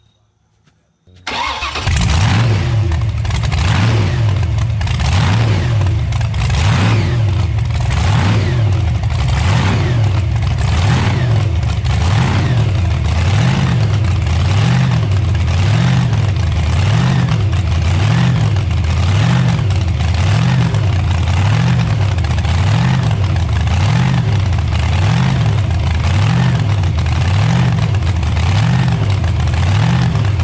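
Supercharged V8 hot rod engine with Enderle mechanical fuel injection and open zoomie headers, restarted warm: it fires and catches about a second in, then idles loud with a rhythmic swell and fade about once a second.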